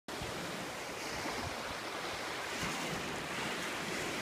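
A steady rushing noise with irregular low rumbles.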